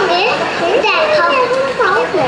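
Children's high voices chattering and calling out over one another, with no clear words.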